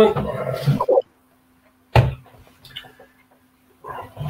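People's voices over a video-call link, cutting out to dead silence for about a second, then a sudden sound and faint scattered noises over a low steady hum before talk resumes near the end.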